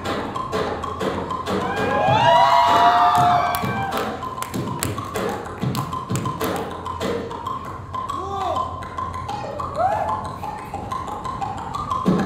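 Live beatboxing through a handheld microphone and PA: a steady beat of mouth-made kick, snare and click sounds. A run of rising-and-falling vocal sweeps comes a couple of seconds in, and short swooping notes come later.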